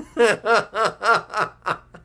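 A man laughing heartily: a run of about six short 'ha' pulses, roughly four a second, each dropping in pitch.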